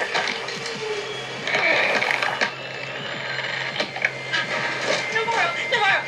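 Film trailer soundtrack: music with sound effects, sharp hits scattered through it, and brief voice fragments.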